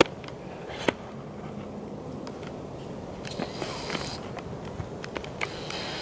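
Camera handling and clothing rustle while the camera is held up: a sharp click at the start and another about a second in, then two short bursts of hissing rustle, one about three and a half seconds in and one near the end.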